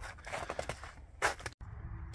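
Irregular light scrapes and crunches that stop abruptly just past halfway, followed by a faint steady hum.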